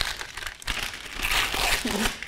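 Wrapping paper crinkling and rustling as a present is unwrapped by hand, growing louder and denser through the second half.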